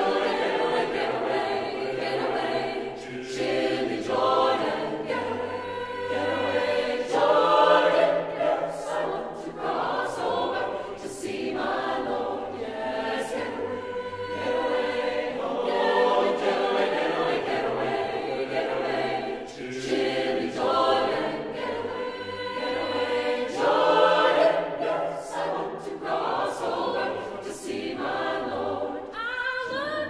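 Mixed choir of men's and women's voices singing a cappella, its phrases swelling and easing in loudness.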